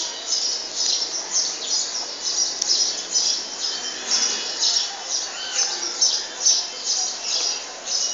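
Bird calling: a steady run of short, high-pitched chirps repeating about two or three times a second.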